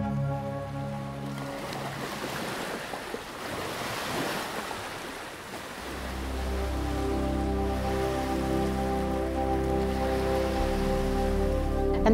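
Soft ambient music fades out into the wash of ocean waves on a beach, then a low, steady ambient music drone comes back in about halfway through with the surf still faintly underneath.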